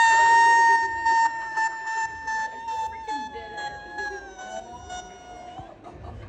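A woman's long, high-pitched scream of excitement, held on one note for over five seconds and wavering and sliding down slightly near the end.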